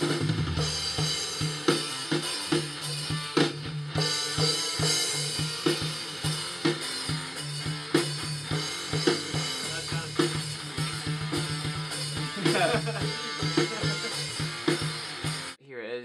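Rock music with a full drum kit (kick, snare, cymbals) and guitar playing steadily; it cuts off suddenly near the end.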